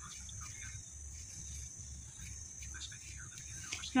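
Faint, irregular scratching and soft ticks of a paintbrush stirring crumbled styrofoam with paste and water in a small container, over a low steady hum.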